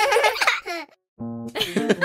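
A cartoon-style voice laughing that cuts off suddenly just under a second in. After a brief silence, another pulsing laugh starts.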